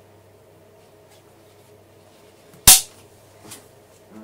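A single sharp, loud snap about two and a half seconds in as a Trabant air filter housing is pushed down into its seat on the engine, followed a moment later by a faint knock.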